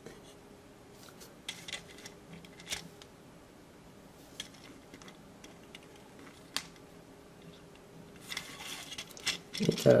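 Faint clicks and taps of plastic model-kit parts and metal tweezers being handled, a few scattered knocks, then a short stretch of rustling and scraping near the end.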